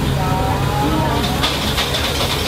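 Steady low hum and background noise of a busy restaurant, with faint voices in the background.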